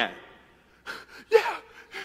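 A man's sharp gasp, then a short breathy exclamation, voiced mid-speech in a dramatic telling. The end of his previous word fades away just before.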